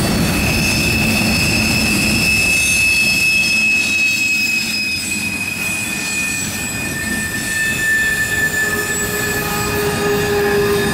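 Freight cars of a manifest train rolling past, their wheels rumbling on the rails while the wheel flanges squeal on the curve in long, high tones that slowly sink in pitch. A second, lower squeal joins partway through, and a much lower one comes in near the end.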